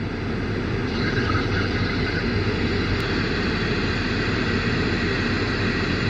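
Machinery running steadily, a hum with a whine of several even tones. It grows louder over the first second or so, then holds.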